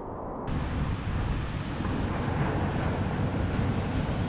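Steady wind buffeting the microphone with ocean surf washing behind it. The sound turns brighter about half a second in.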